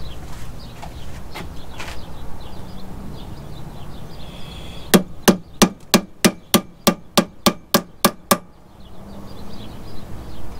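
A hammer striking a 19 mm socket set on a U-joint bearing cap held in a vise, driving the cap into the driveshaft yoke: about a dozen quick metallic blows in a steady run of roughly three a second, starting about five seconds in.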